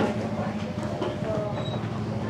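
Street-food alley ambience: a steady low mechanical hum with voices of people talking in the background.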